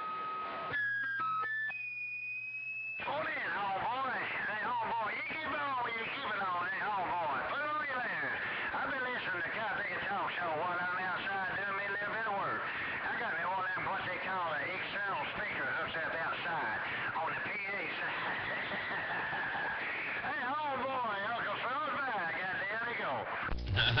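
A CB radio receiving another station: a short series of electronic beep tones over a low steady hum, then a warbling, hard-to-make-out voice coming through the radio's speaker.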